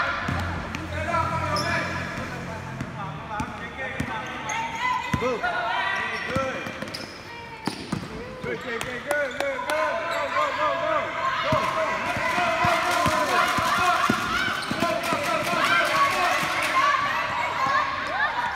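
A basketball bouncing on a court during a youth game, amid overlapping children's and spectators' voices and shouts. The short sharp knocks come most often in the second half.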